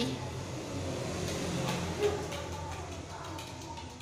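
A small ball kicked and rolling across a tiled floor, with one soft knock about two seconds in, over a steady low hum.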